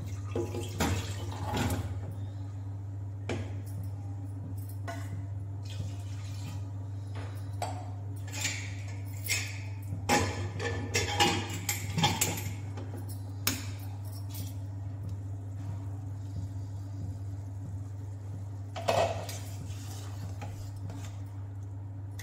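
Metal kitchen pots, lids and utensils clinking and clattering now and then over a steady low hum.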